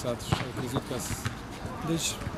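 Low-pitched voices talking, with a sharp knock about a third of a second in.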